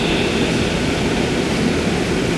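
Steady rushing background noise, an even hiss with a low rumble and no change across the pause: room noise picked up through the lectern microphone.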